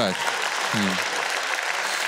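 Stand-up comedy audience applauding a punchline, an even clatter of many hands clapping, with a brief vocal sound just under a second in.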